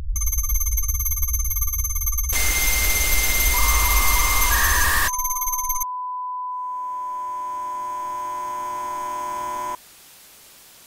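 Electronic sound-design effects: a ringing, telephone-like electronic tone over a low rumble, broken about two seconds in by a loud burst of static lasting about three seconds. Then a steady electronic beep tone holds for several seconds and cuts off suddenly near the end, leaving faint hiss.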